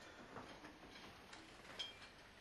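Near silence with a few faint, irregular clicks and ticks from a wheelchair being pushed across a room floor, the sharpest one near the end.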